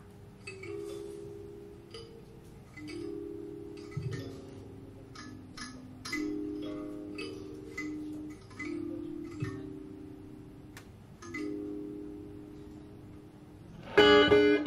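Blues harmonica cupped to a microphone, playing a slow, quiet passage of held notes, often two at once.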